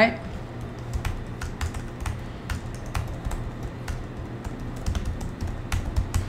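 Typing on a computer keyboard: a run of irregular key clicks as a line of text is typed.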